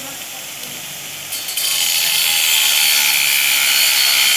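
Angle grinder working steel square tubing: a steady harsh hiss of the disc on the metal that gets clearly louder about a second and a half in, as it bears down harder, and then holds.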